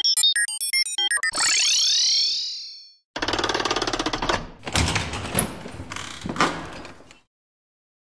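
Sound effects: a quick run of electronic beeps from a handheld device, then a shimmering sweep, then a heavy steel vault door grinding and clanking open, with a couple of louder clanks near the end.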